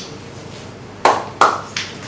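Three sharp hand claps about a third of a second apart, starting about a second in.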